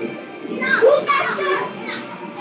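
Children's voices over background music, the voices loudest about halfway through.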